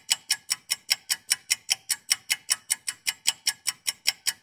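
Fast, even clock-like ticking, about six or seven ticks a second. It is a countdown-timer sound effect, giving time to answer a quiz question.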